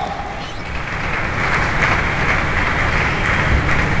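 Steady murmur of an arena crowd between points of a table tennis match, swelling about a second in.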